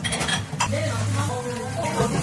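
Metal spoon clinking and scraping against a glass tumbler as thick strawberry purée is spooned in, with a steady low hum in the background.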